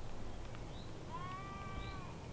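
A faint animal call: one drawn-out, steady-pitched call lasting just under a second, starting about a second in, over a quiet outdoor background with short high chirps about once a second.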